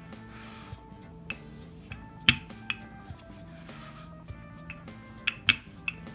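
Background music with a handful of sharp knocks of a wooden rolling pin against a wooden pastry board as pie dough is rolled out. The loudest knock comes a little over two seconds in, and a close pair falls near the end.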